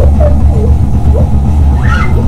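Loud, distorted low rumble that overloads the microphone, with faint music and voices under it, while the boys jump on the bed the camera sits on.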